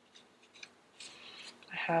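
Paper sticker sheets being flipped and slid against each other, with a few faint ticks and then a soft rustle about a second in.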